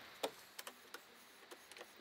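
A few light clicks of hand tools being handled on a wooden workbench: one sharper click just after the start, then scattered fainter ticks.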